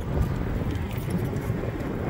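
Steady low rumble of wind and riding noise on the microphone while cycling an e-bike along a path, with no distinct events.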